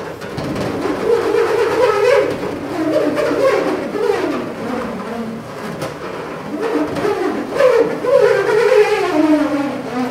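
A metal hex nut spinning around inside an inflated latex balloon that is being swirled by hand, making a continuous buzzing hum. Its pitch rises and falls as the swirl speeds up and slows down.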